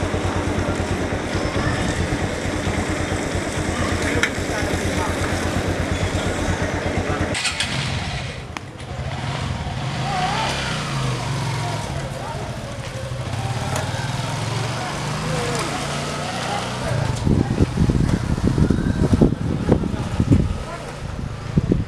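A vehicle engine running with rapid, even firing pulses, which give way about seven seconds in to a steadier, lower drone. Irregular low thumps come in near the end.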